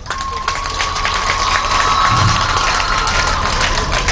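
Audience applauding with dense clapping. A steady high tone is held over the applause for about three seconds, rising slightly and then dropping back before it stops.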